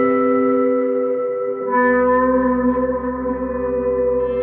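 Sampled guitar pads from 8Dio Emotional Guitars Pads, the Love and Optimism patches layered, holding a sustained, reverberant chord played from a keyboard. About a second and a half in, a brighter layer with a low bass note swells in under the held tones.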